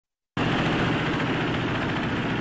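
Vehicle engines running steadily with a low hum under a dense noisy rumble, starting abruptly about a third of a second in.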